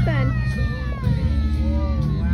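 A long, high-pitched cry or call, held for nearly two seconds and falling slowly in pitch, over a steady low hum.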